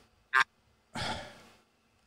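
A man sighing: a brief mouth click, then a soft breathy exhale of about half a second that fades away.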